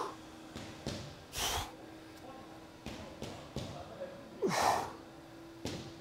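A man breathing out hard twice while holding a deep squat stretch: a short breath about a second and a half in and a longer one just before five seconds, over a faint steady hum.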